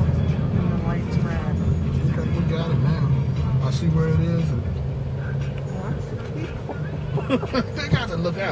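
Steady low rumble of a car's engine and road noise, heard from inside the cabin while driving slowly, with faint voices over it and a few sharp clicks near the end.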